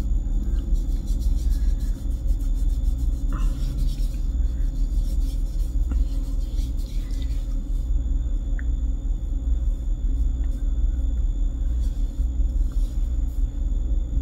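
A steady low rumble, with faint soft rubbing in the first half as a toner-soaked cotton round is wiped over the skin of the face.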